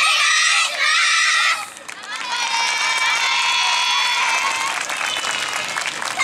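A group of children shouting a call together in unison: two loud bursts in the first second and a half, then a long held note.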